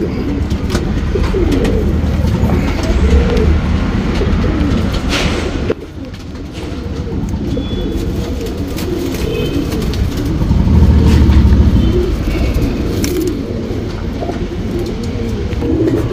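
Mysore Pilanka Cheeni pigeons cooing, low rolling coos repeated one after another, louder a little past the middle.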